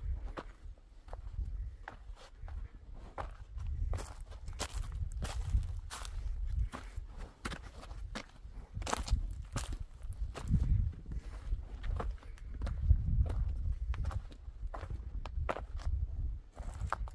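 Footsteps on rocky, stony ground: an irregular run of scuffs and knocks, with a low rumble underneath that swells and fades.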